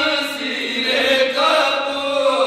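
Several men chanting a noha, a Shia mourning lament, together in unison, with long drawn-out notes that bend slowly in pitch.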